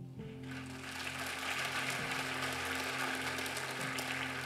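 Keyboard holding steady sustained chords, joined about half a second in by congregation clapping and applause.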